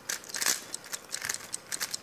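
Plastic 3x3 Rubik's cube being turned fast by hand: a quick, irregular run of clicks and clacks as its layers snap round, loudest about half a second in.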